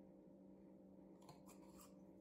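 Near silence over a faint steady room hum, with a few faint soft ticks a little past a second in from a small glass spice shaker being shaken over a yogurt bowl.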